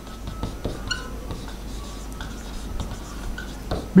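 Marker writing on a whiteboard: faint scratchy strokes, with a few thin, high squeaks from the tip.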